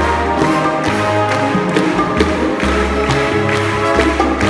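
Live Latin jazz band with a chamber orchestra playing an upbeat arrangement: a bass line stepping from note to note under sustained orchestral notes, with steady percussion strokes and hand claps.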